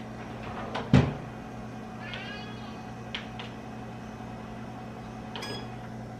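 A single clunk about a second in as a tray of diced potatoes and peppers goes into a Ninja Foodi countertop air fry oven and its door shuts. A steady low appliance hum follows, with a few light clicks as the oven is set, and a short high beep near the end.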